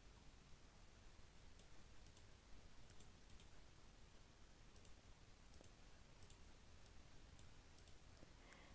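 Near silence: faint room hiss with a scattering of soft, short computer mouse clicks.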